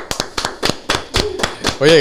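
Hands clapping in a quick, irregular run of sharp claps, with a man's voice starting over them near the end.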